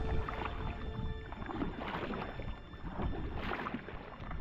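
Kayak paddle blades dipping into and pulling through river water, with irregular splashes and drips from alternating strokes. Background music fades out in the first second or so.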